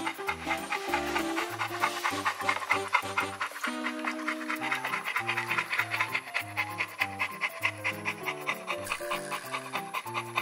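A large pit bull mix dog panting steadily, heard over background music.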